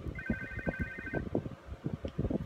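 An electronic telephone-style ring: a fast warbling trill of high tones that lasts about a second and breaks off, over a series of soft, irregular low knocks.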